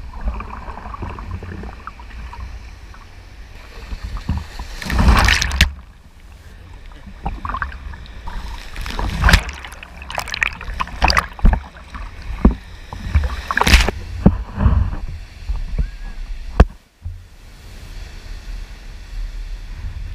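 Lake surf splashing and washing over a waterproof camera held at water level, with a steady low rumble of water and wind on the microphone. Several louder surges come as waves break over the camera, the strongest about five, nine and fourteen seconds in.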